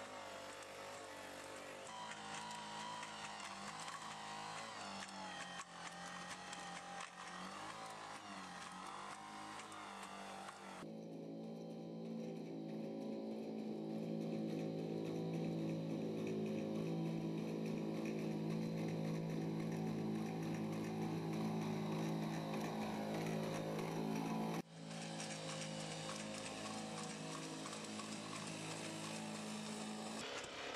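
Boston Dynamics LS3 four-legged robot running, its engine and hydraulics giving a steady, pitched droning hum, with its footsteps on leaves and gravel. The sound shifts abruptly about 11 seconds in and again about 25 seconds in.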